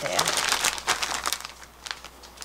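Clear plastic storage bag crinkling and rustling under the hands as it is pressed and handled, busiest in the first second and a half, then quieter, with one sharp crackle near the end.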